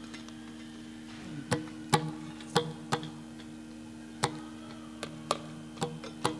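Yakshagana stage ensemble: a steady drone under about eight sharp, irregularly spaced percussion strokes, starting about a second and a half in.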